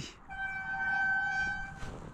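A single steady horn-like tone with a clear pitch, held for about a second and a half.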